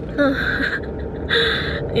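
A woman sighing twice, two breathy exhales about half a second each, the first with a brief voiced start, in exasperation at slow traffic. Under them runs the low rumble of a car cabin.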